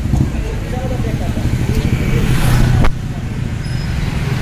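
Low rumble of outdoor background noise with faint voices. A sharp click comes nearly three seconds in, and the rumble is quieter after it.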